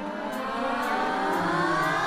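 Film soundtrack: a sustained cluster of many tones gliding slowly upward and growing louder, like a siren-like riser.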